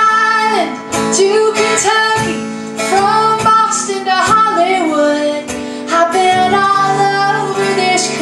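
A woman singing over her own strummed acoustic guitar, performed live.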